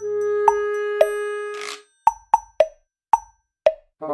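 Playful background music: one held note for nearly two seconds with two short pops over it, then five short, separate pops with silent gaps between them.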